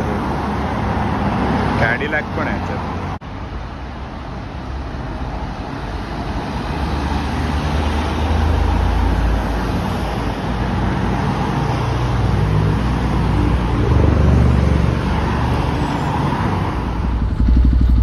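Cars driving past on a city road: steady traffic noise with a deep engine rumble that grows louder in the second half as more cars go by. About three seconds in the sound briefly drops out.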